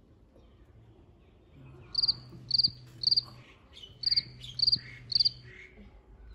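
Cricket chirping: two groups of three short, high, trilled chirps about half a second apart, over a faint low hum.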